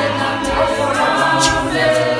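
Zion church choir of men's and women's voices singing a cappella in harmony, with one sharp hit about three-quarters of the way through.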